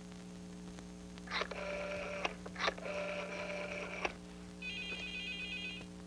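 Desk telephone in use: clicks of the handset and dial, a steady line tone in two stretches broken by clicks, then a warbling electronic ring about a second long near the end, the call ringing through.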